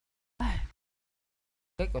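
A man's short, exasperated sigh, falling in pitch, about half a second in, as the layout preview fails to show. Speech starts near the end.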